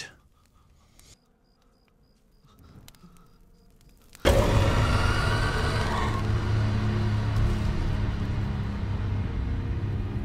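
Near silence, then about four seconds in a horror-film score comes in suddenly and loud: a dense, ominous swell over a steady low droning rumble that holds on.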